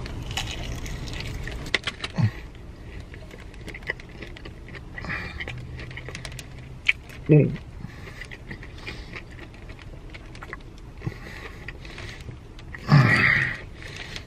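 Close chewing and crunching of an extra crispy fried chicken tender with a pickle slice, a run of small crackles. A short "ooh" comes about seven seconds in, and a louder voiced hum near the end.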